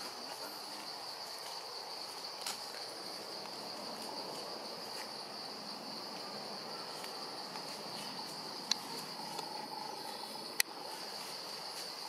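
Steady insect chorus, a continuous high-pitched drone, with a few sharp clicks near the end.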